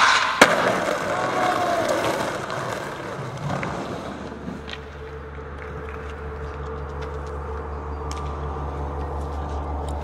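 Skateboard wheels rolling over paving tiles, with a sharp clack of the board right at the start and another about half a second in; the rolling fades away over the next few seconds. After that a steady low hum with a few faint high tones remains.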